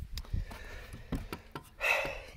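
Handling noise: a few light knocks and rubbing as hands move over the rifle and the camera is shifted across the wooden bench, over a low rumble.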